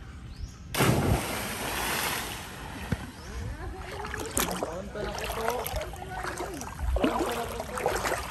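A person jumping from a tree into the river: a big splash about a second in that dies away over a second or two, followed by voices calling out.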